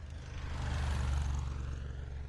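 Car running, a steady low rumble heard from inside the cabin, with a rushing hiss that swells and fades about a second in.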